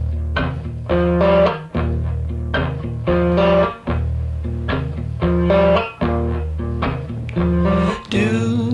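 Instrumental rock music: guitar playing a repeating phrase over a steady bass line, with the phrase coming round about every two seconds and no vocals.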